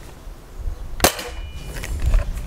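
Anschütz Hakim spring-piston air rifle firing a single shot about a second in: one sharp crack followed by a brief, faint ringing tone.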